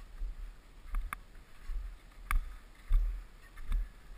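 Crampon-shod boots crunching into firm snow in slow, uneven steps, a sharp crunch about once a second. Wind buffets the microphone as a low gusting rumble, loudest about three seconds in.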